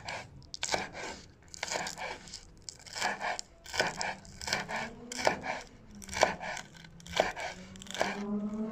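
Kitchen knife slicing spring onions on a wooden chopping board: slow, separate cuts about one a second, each a crisp crunch through the stalks, some ending in a sharp knock of the blade on the board.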